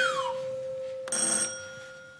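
Fairground high-striker sound effect: a falling whistle-like glide at the start, then about a second in a bell dings and rings on, fading.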